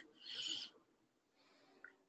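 A short, soft breath of a person on a microphone about half a second in, then near silence.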